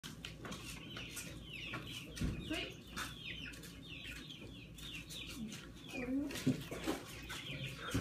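Nestling songbirds begging for food, a rapid run of short, high chirps, each sliding down in pitch, as they gape for a feed.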